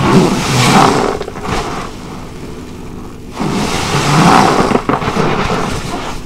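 A lather-soaked car wash sponge squeezed by gloved hands, two wet, squelching squeezes with foam and water pressed out, the first right at the start and the second about three and a half seconds in.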